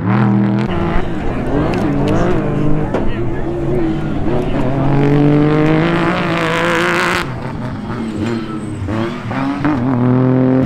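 Trophy truck's engine revving up and down as it races over the dirt course, its pitch rising and falling with the throttle. A loud noisy hiss rises over it from about five and a half to seven seconds.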